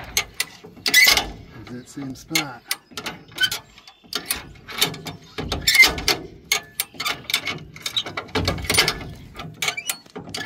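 A ratcheting car bumper jack being pumped with its steel handle, the pawl clicking in irregular strokes, with heavier metal clanks about a second in, near the middle and toward the end. The rusty jack is sticking and is being worked up and down to free it so it will lower.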